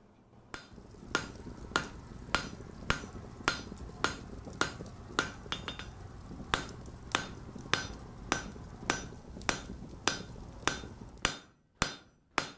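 Blacksmith's hammer striking an anvil in a steady rhythm, a little under two ringing blows a second, over a low steady rumble. Near the end the rumble drops away and the blows come a little quicker.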